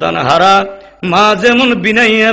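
A male preacher's voice chanting in the melodic, sung delivery of a Bengali waz sermon. There are two held, wavering phrases, the second starting about a second in.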